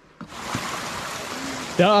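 Water running steadily from an old stone fountain, its pipe spout pouring into the trough and spilling over the ground, starting just after the beginning.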